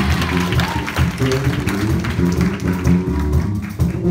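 Live funk band playing a groove, led by electric bass and drum kit, with a dense bright wash over the top.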